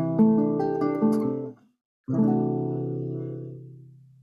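Acoustic guitar chords played in a short progression. Then a single chord is struck about two seconds in and left to ring, fading away: the resolution to C major after G7.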